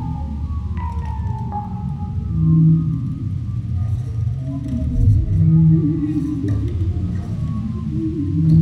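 Double bass playing low sustained notes that swell roughly every three seconds, with fainter sliding higher tones and scattered small clicks.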